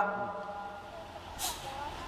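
A man's chanted voice through a loudspeaker system breaks off, and its last held note rings on and fades over about half a second, leaving a low hum. A short hiss comes about one and a half seconds in.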